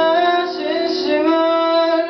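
A man singing a long held, high note that bends in pitch, over a ringing acoustic guitar chord.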